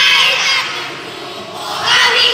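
A group of children shouting a team cheer together, a loud burst at the start that dies away, then rising again near the end.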